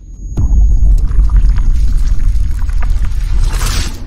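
Intro-sting sound effects: a loud, deep rumble starts suddenly with a hit just after the start, with scattered crackles through it. A rising hiss swells near the end.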